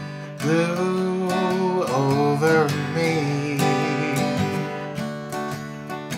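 Yamaha acoustic guitar strummed in a country ballad, with a man's voice holding long sung notes that bend and waver in pitch.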